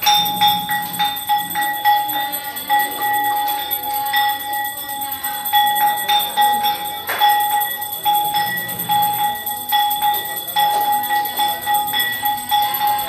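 Aarti hand bell rung continuously, about three strokes a second over a steady ringing tone.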